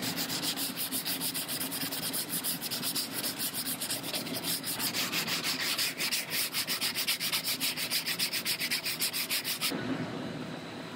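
Sandpaper on a hand sanding block rubbed back and forth over body filler on a car's quarter panel, in quick, even strokes that stop suddenly just before the end.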